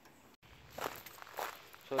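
Footsteps of a person walking on a forest dirt trail: two steps, about a second in and half a second later.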